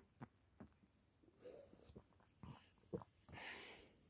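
Near silence with a few faint clicks and gulps of someone drinking from a can of cola, and a soft breath near the end.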